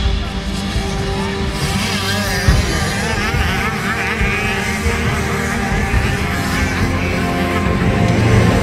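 A pack of youth motocross bikes racing off the start, many small engines revving hard together, their pitches rising and falling over one another.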